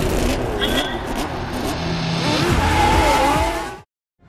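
Open-wheel race car engines revving and passing, their pitch sweeping up and down, with the sound cut off abruptly just before the end.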